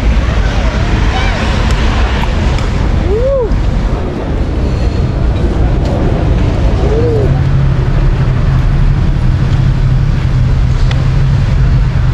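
Busy street ambience: a steady low rumble of traffic, with a few short voice calls. A steadier low hum joins about two-thirds of the way through.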